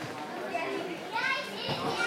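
Spectators' chatter, with one high-pitched voice calling out from about a second in until near the end.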